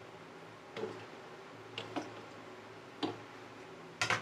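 Wooden stirring utensil knocking against the side of an aluminium cooking pot while stirring soup: four light clicks at uneven intervals, two of them close together near the middle, over a low steady hum.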